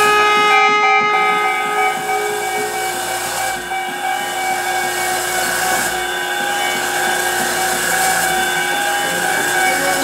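Free-improvised music from pedal steel guitar and live electronics: several long held tones stacked over a steady hiss, with some of the higher tones dropping out in the first few seconds.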